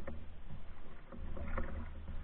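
Canoe being paddled on calm water: a light knock at the start and a paddle stroke swishing through the water about a second and a half in, over a steady low rumble.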